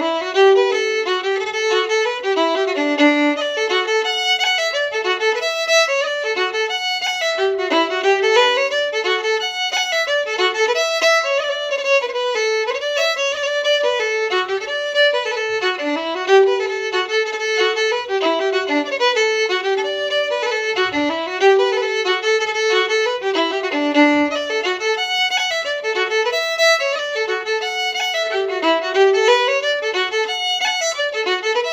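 Unaccompanied fiddle playing an Irish highland tune, a steady, unbroken run of quick bowed notes.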